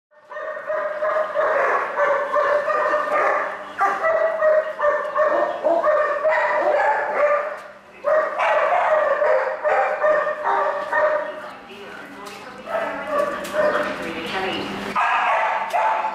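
A dog giving a near-continuous run of high-pitched barks, yips and whines, with brief pauses about eight and twelve seconds in.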